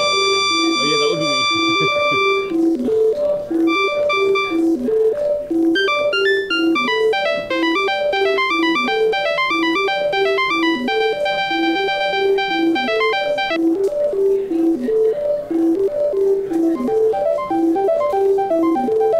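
Aud Calc, an RP2040-based pocket synthesizer, sampler and sequencer, playing a looping sequenced pattern: a repeating low riff runs throughout while higher synth notes step and hold over it. The pattern changes live as pads are pressed, and the upper part drops out about three-quarters of the way through.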